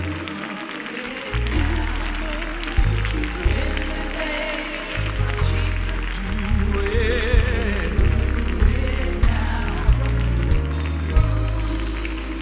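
Live gospel music: voices singing over a bass line and drums with a steady beat.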